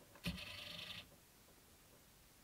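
A brief knock followed by a short, high rattling scrape lasting under a second, the sound of a plastic figurine being handled.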